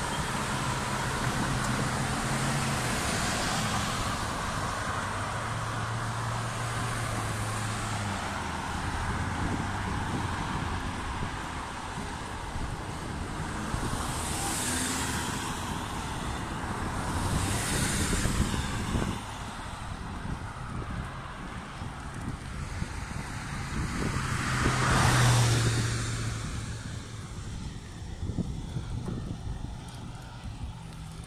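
Road traffic on a wide multi-lane road: a steady wash of car and tyre noise, with vehicles passing close by about halfway through, again a few seconds later, and loudest about five seconds before the end.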